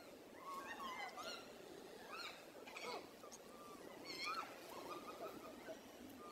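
Infant pig-tailed macaque giving a string of short, high-pitched squeaky calls, with bursts about half a second in, around two and three seconds, and just after four seconds.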